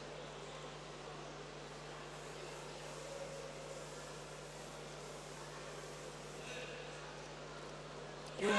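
Faint, steady background noise of a sports hall during a judo bout, with a low steady hum and no distinct impacts.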